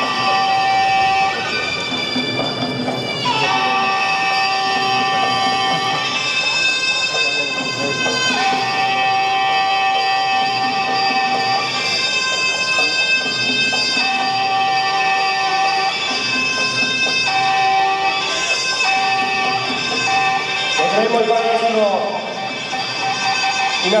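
Traditional Thai martial-arts music accompanying a krabi krabong ritual dance: a reedy wind instrument plays long held notes, each lasting a couple of seconds, moving between a few pitches.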